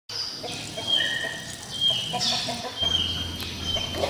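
Birds calling: a series of short, high, steady-pitched calls, about one a second, with a low hum in the last second.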